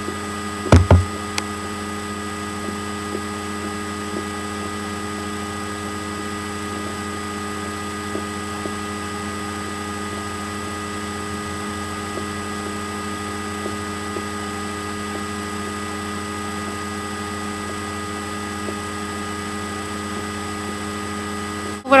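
Steady electrical mains hum with several constant tones, with one loud thump a little under a second in.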